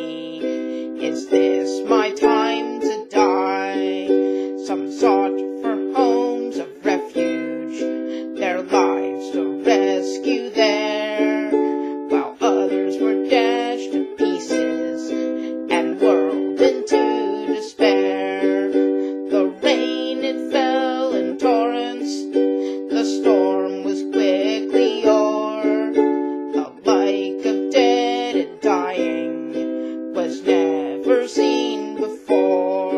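Ukulele strummed in steady chords, accompanying a woman singing a slow folk ballad.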